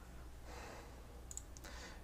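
Quiet pause with faint hiss, a soft breath, and a few small clicks about a second and a half in.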